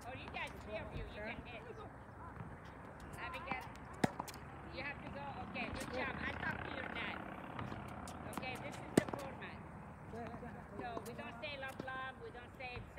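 Tennis racket striking a ball, two sharp loud hits about four seconds and about nine seconds in, with fainter knocks of ball contact in between, over voices chattering throughout.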